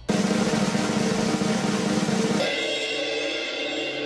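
Snare drum roll sound effect building suspense for a verdict reveal. About two and a half seconds in, it gives way to a held musical chord.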